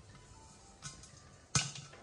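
Popcorn kernels popping inside a stainless-steel electric kettle: a small click just under a second in, then one sharp, loud pop about a second and a half in. Faint background music underneath.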